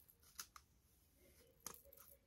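Near silence with two faint, brief strokes, about half a second in and near the end: a wide-tooth plastic comb drawn through damp hair to detangle it.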